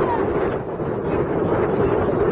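Wind buffeting the microphone with a steady rushing rumble, and faint shouts from players on the pitch.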